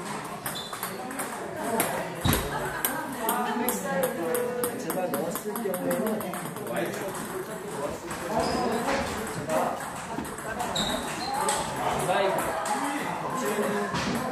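Celluloid-plastic table tennis balls clicking off tables and rackets, many sharp clicks from the near table and from other tables in play, with people's voices behind them.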